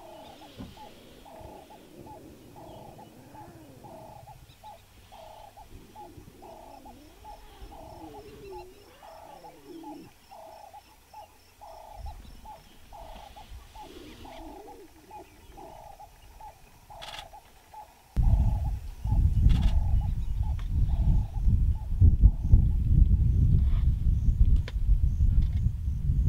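Lion cubs growling and grunting low over a zebra carcass, with a bird calling one short note over and over, about twice a second. About eighteen seconds in, a loud low rumbling noise starts and continues.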